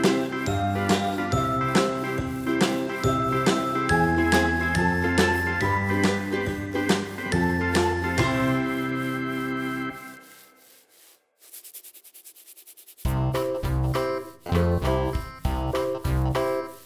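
Children's background music with tinkling chime notes over a steady beat. It fades out about ten seconds in, a brief rapid rattling hiss follows, and a new tune starts about three seconds later.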